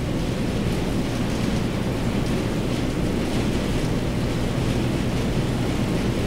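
Steady room noise: an even low rumble and hiss with a steady low hum underneath, unchanging throughout.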